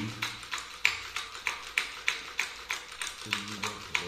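Small wooden hand-held palanquin used in spirit-writing divination, knocking against a wooden table in a steady rhythm of about three sharp taps a second as two men sway it; the taps trace characters taken as the deity's message.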